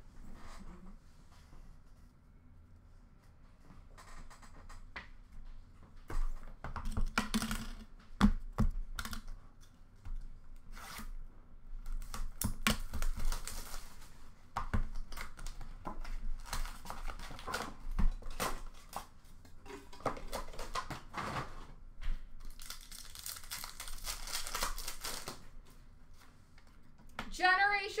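Hockey card box and foil packs being opened by hand: wrappers tearing and crinkling, and cards and cardboard handled with scattered clicks and taps, with a longer stretch of tearing and crinkling about three-quarters of the way through.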